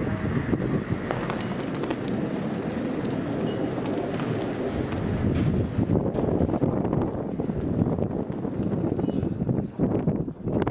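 Wind buffeting the microphone, a steady low rumble with small irregular gusts.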